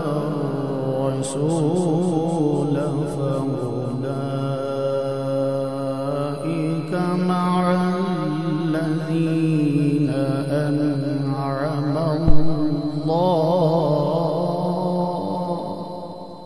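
A man reciting the Quran in the melodic tajweed style, holding long, ornamented notes with a wavering pitch. There is a sharp thump about twelve seconds in, and the voice trails off at the end.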